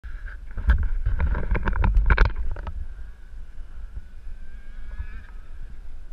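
Handling noise and wind on a small action camera's microphone: a run of knocks and rumble over the first two and a half seconds. After that comes a faint, steady engine tone that rises slightly a little before five seconds.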